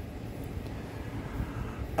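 Low, steady background rumble with no distinct sound events.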